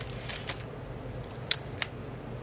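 Faint handling noise from a plastic-wrapped planner insert being picked up, with two short sharp clicks near the end.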